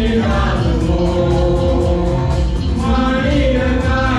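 A group of singers singing together through microphones in long held notes, over amplified instrumental accompaniment with a steady low beat.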